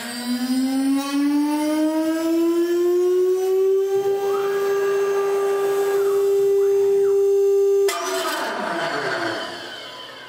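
CNC mill spindle spinning up with a rising whine that levels off to a steady high hum after about three seconds. A hiss joins about four seconds in. Near eight seconds the steady tone breaks off into falling, sweeping tones as the sound fades.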